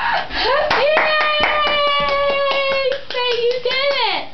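Rapid hand claps under a single long, high voice note that is held steady for about three seconds and then falls away at the end.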